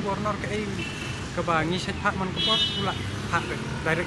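A man speaking, with street traffic running in the background.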